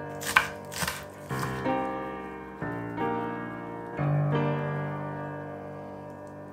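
Background piano music: soft sustained chords that change every second or so. Two short sharp knocks come about a third of a second in and just under a second in.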